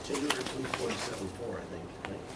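A quiet, low murmuring voice with a few light paper rustles as sheets are handled.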